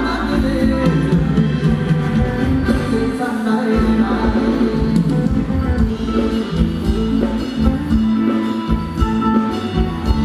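Live band playing Thai ramwong dance music, with singing over a steady beat.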